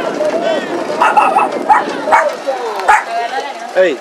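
A dog barking several times in short separate barks, over people's voices and a shout near the end.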